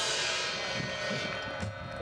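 A drum kit's cymbal ringing out and fading over about a second and a half, with a few soft drum hits beneath it.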